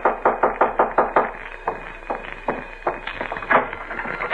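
Radio-drama sound effect of sharp knocks: a quick run of about nine a second for the first second, then a few slower, scattered knocks.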